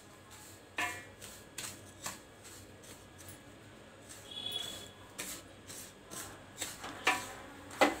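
Wooden spatula stirring and scraping a dry, gritty mix of shredded dried coconut and sugar around a stainless steel bowl, in a series of short scrapes and taps against the metal, the last one the loudest. A little powdered sugar is poured in from a small bowl partway through.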